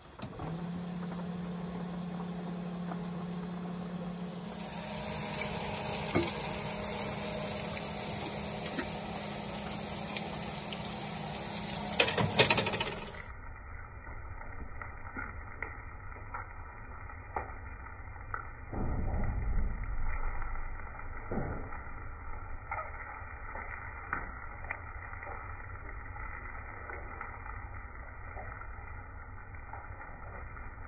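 Meat patties on a griddle and bacon in a pan sizzling and frying over a gas stove, with a brief clatter of cookware about twelve seconds in and a few clicks and a low rumble later.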